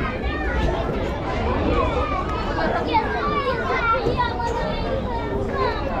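A crowd of children chattering and calling out at play, many high voices overlapping at once.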